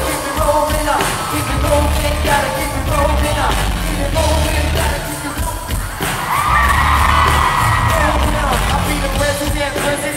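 Live pop music from a boy band's concert, amplified through the hall's PA: a steady beat with heavy bass and singing. A bright, held sound with gliding pitches comes in about six and a half seconds in and lasts over a second.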